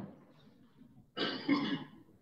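A person clearing their throat: one short, two-part burst about a second in.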